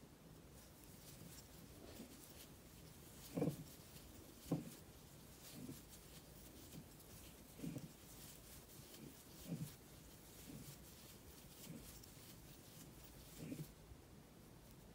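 Faint handling sounds of crocheting cotton yarn with a metal hook: soft rustles and a few low, dull bumps. The two loudest come about three and a half and four and a half seconds in.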